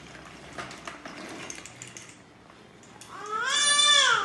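A few light clicks and taps, then about three seconds in a baby's voice rises into a long, loud squeal.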